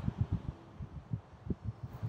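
Low, uneven rumble of wind buffeting the microphone outdoors, in irregular gusty thumps.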